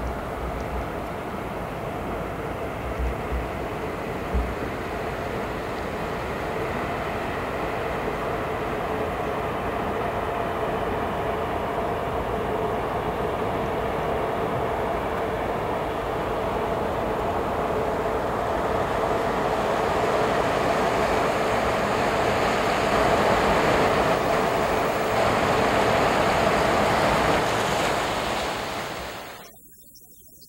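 A large bulk carrier passing close under way: a steady rumble of engine and water noise with a faint hum, growing slowly louder as the ship's stern and accommodation block draw near. It cuts off suddenly near the end.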